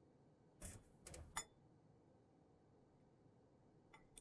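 A few faint scrapes and a light clink of a metal fork against ceramic bowls in the first second and a half, then near silence.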